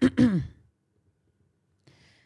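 A person's short voiced sigh, falling in pitch, lasting about half a second.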